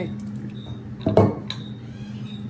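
A small glass shaker jar clinking and knocking in the hands and on a wooden table as seasoning is shaken onto foil-wrapped tacos, with one louder clatter about a second in. A steady low hum runs underneath.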